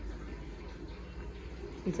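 Kitchen tap running steadily, filling a plastic bucket in a steel sink, heard as a faint even hiss from a little way off; a woman starts speaking near the end.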